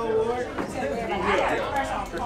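Voices chattering over one another in a large room, with a man calling out "hey".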